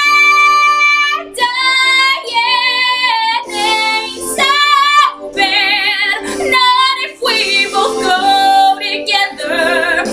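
A woman belting a show tune. A long held note breaks off just over a second in, then comes a string of sustained notes, several with wide vibrato.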